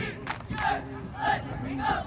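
A cheerleading squad shouting a cheer in unison: short, high-pitched shouted syllables in a steady rhythm, about three in two seconds.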